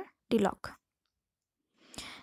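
Speech: a short spoken fragment, then about a second of dead silence, then a soft intake of breath before the voice goes on.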